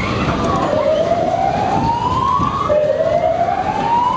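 A whooping siren that rises in pitch over about two seconds and starts over three times, above the steady rumble of a Sobema Superbob ride running at speed.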